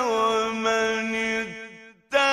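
A single unaccompanied voice chanting in a melismatic Arabic style, holding one long note that fades away near the end.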